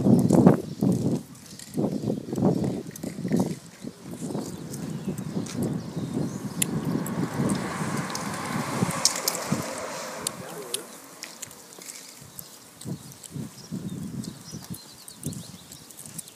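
Indistinct voices and footsteps on a paved street, busiest in the first few seconds, then a quieter stretch with scattered sharp clicks.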